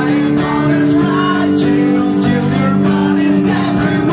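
Acoustic guitar strummed in steady chords, played live and loud, with a voice singing a wavering melody over it.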